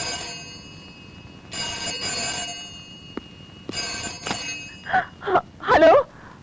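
Bell of a rotary-dial desk telephone ringing in double rings, three times about two seconds apart. The ringing stops as the phone is answered, and a brief voice follows near the end.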